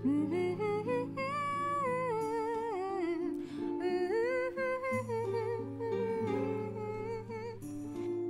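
A woman humming a wandering tune over soft background music.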